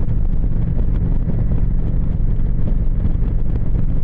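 Motorcycle engine running steadily at cruising speed, with wind rushing over the microphone.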